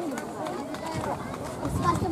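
Several overlapping, unintelligible voices of children and onlookers shouting and calling across an outdoor soccer pitch, getting louder again near the end.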